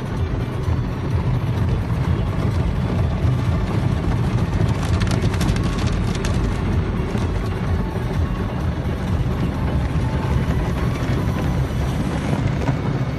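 Automatic car wash heard from inside the car's cabin: water and soap spraying and washing over the windshield and windows, a loud, steady, rumbling wash that spatters more densely about five to six seconds in.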